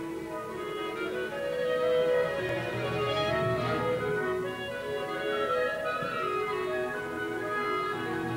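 Opera orchestra playing an instrumental passage of long held notes that shift slowly from one chord to the next.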